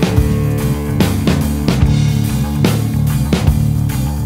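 Stoner rock band playing an instrumental passage: a bass and electric guitar riff over a steady drum-kit beat.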